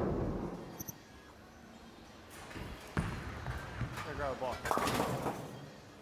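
A short broadcast transition whoosh at the start, then a bowling ball rolling down the lane and striking pins about three seconds in. The shot is a split conversion attempt that leaves one pin standing.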